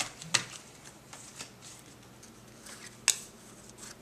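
Playing cards being handled and dealt on a tabletop: a sharp card snap about a third of a second in and another about three seconds in, with lighter ticks and slides of cards between.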